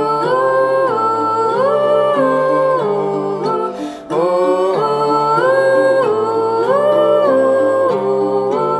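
Voices humming a wordless melody in harmony over a strummed ukulele. The same phrase of about four seconds is heard twice, with a short break between them about four seconds in.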